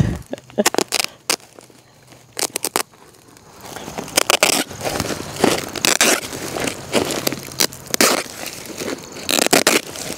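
Geotextile fabric crinkling and rustling as the roll is pulled and unrolled over gravel, with gravel crunching under it. It starts with a few scattered clicks and turns into a dense, busy crackle from about three and a half seconds in.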